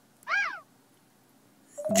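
A single short cat meow that rises and then falls in pitch.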